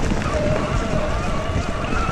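Electric mountain bike riding along a dirt forest trail: wind rushing over the microphone and the tyres rolling and bumping over the ground, with a faint steady whine underneath.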